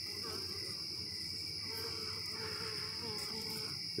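A steady high-pitched trill of crickets, with a fainter, wavering low buzz of honey bees through the middle.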